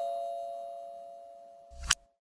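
Logo sting sound effect: a bell-like chime ringing out and fading steadily, followed by a brief sharp swish near the end.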